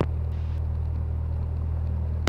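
Cessna 172's piston engine idling on the ground, a steady low drone heard inside the cabin.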